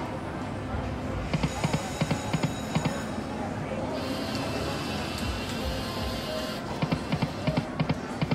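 88 Fortunes video slot machine playing its game music and spin tones, with a quick run of thuds as the reels stop one after another, twice: about a second in and again near the end.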